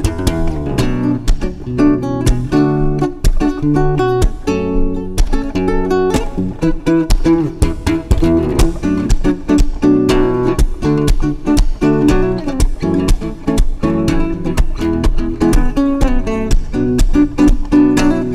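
Cutaway electro-acoustic guitar played fingerstyle in a steady, driving rhythm, mixing picked melody notes with sharp percussive strums.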